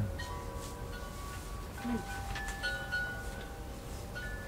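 Wind chimes ringing: a few clear tones at different pitches struck one after another, each ringing on and overlapping the next. A brief low "mm" murmur comes about halfway through.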